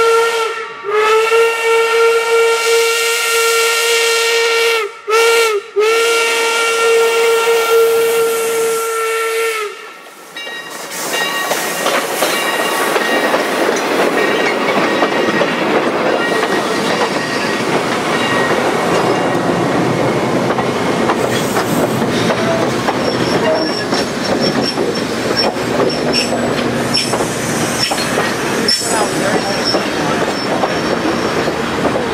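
Steam locomotive whistle blowing one steady pitch, held long with two short breaks, for about the first ten seconds as the steam train approaches. Then passenger coaches roll past close by with a steady rumble and clickety-clack of wheels over rail joints.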